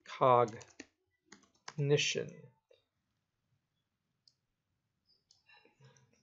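Computer keyboard keys clicking in short quick runs as a word is typed, between brief bits of a man's speech near the start and about two seconds in.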